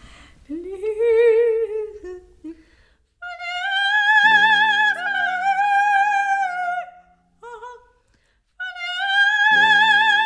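Female operatic voice singing long, high sustained notes with vibrato in a vocal exercise, with held accompanying chords entering under each note. Just before them, a lower sung glide rises and falls.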